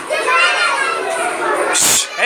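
Many children talking and calling out at once in a classroom, a continuous overlapping chatter, with a short rustling burst near the end.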